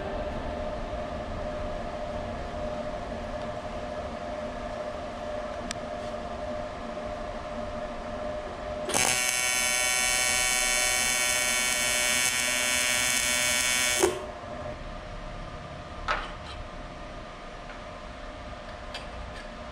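Welding arc on a metal intake tube, a steady buzz that starts about nine seconds in, holds for about five seconds and cuts off with a click. A steady hum runs underneath, and a single tap follows a couple of seconds later.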